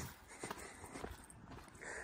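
Faint footsteps of a person walking, a few soft ticks over a low outdoor background.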